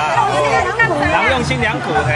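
Several women's voices chattering over one another in casual conversation.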